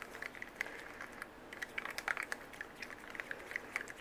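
Maple syrup being stirred with a mixing tool in a small plastic cup: faint, irregular clicking and ticking of the tool on the plastic, several small clicks a second.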